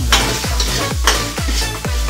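Metal spatula stirring and scraping sizzling food in a stainless steel wok, with two louder scrapes, one right at the start and one about a second later, over electronic dance music with a steady kick drum.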